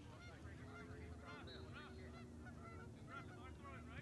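A flock of geese honking overhead, many short overlapping calls throughout, faint over a low steady rumble.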